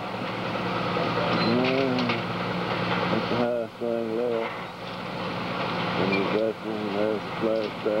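Steady running of a heavy demolition machine's diesel engine, with indistinct voices heard three times over it.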